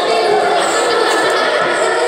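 Many children's voices chattering and calling at once, echoing in a large hall.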